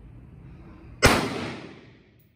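A single rifle shot about a second in, sharp and loud, with an echoing tail that dies away over most of a second.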